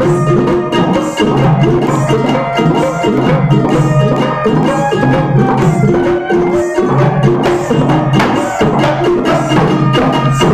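Instrumental break of a Bengali folk song: a harmonica holds the melody in sustained notes over ukulele strumming and a steady hand-drum rhythm.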